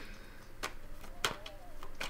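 A few sharp clicks a little over half a second apart from a tarot deck being handled, with a faint hum of a woman's voice near the end.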